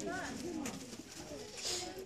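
Low cooing bird calls over indistinct human voices, with a brief hiss near the end.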